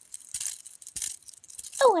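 White three-armed plastic fidget spinner with metal bearings being spun by hand: a few light clicks and rattles as it is flicked and whirls between the fingers.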